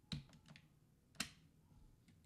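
Two sharp clicks about a second apart, with a couple of fainter taps between them, from someone working a computer's keyboard and mouse.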